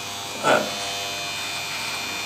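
Electric beard trimmer running with a steady buzz as it is pushed up through beard hair on the neck. A brief louder sound cuts in about half a second in.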